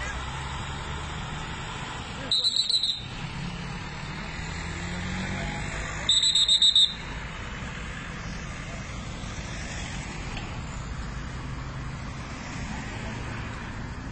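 Two short bursts of high-pitched electronic alarm beeping, each a rapid run of pulses lasting under a second, about four seconds apart. They sound over a steady outdoor rumble of road noise.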